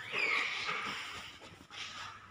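A young child's faint, high-pitched whine that falls in pitch in the first half second, trailing off into softer vocal sounds.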